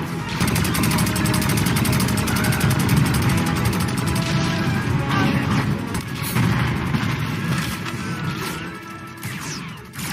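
Film battle sound effects of stormtrooper blaster fire and explosions over music. A rapid run of blaster shots fills the first few seconds, with scattered zipping bolts and blasts after that.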